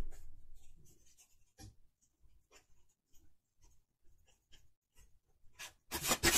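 Tarot cards being handled: faint scratchy rustling and scattered light taps, a little louder near the end.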